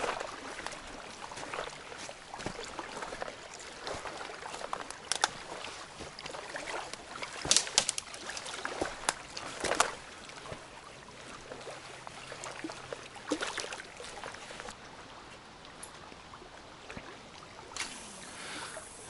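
Footsteps on a sandy bank littered with dry twigs, with scattered sharper snaps and cracks. Under them, a faint steady wash of small waves lapping at the water's edge.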